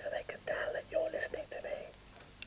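A man's voice speaking softly, close to a whisper, into one carton of a yoghurt-pot string telephone.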